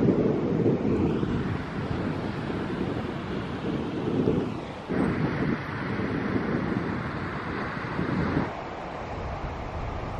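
Wind blowing across the camera microphone, a low rushing noise that swells and dips and changes in character about five seconds in.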